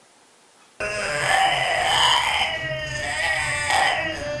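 French bulldogs whining in long, wavering cries that start suddenly about a second in, after near silence.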